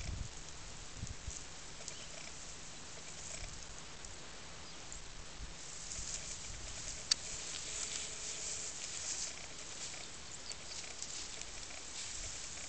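Dry grass stems rustling and crackling as they are handled, with irregular small crackles and one sharp click about seven seconds in.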